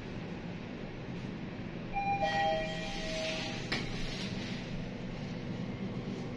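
Mitsubishi elevator arrival chime: two held electronic tones, a higher note and then a lower one, sounding about two seconds in over the car's steady low hum, followed by a click.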